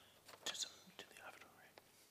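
Faint whispering close to a microphone, with a few small clicks.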